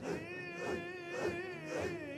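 A male voice sings a sustained, ornamented Turkish ilahi phrase with a wavering pitch, over a low, regular pulse about twice a second.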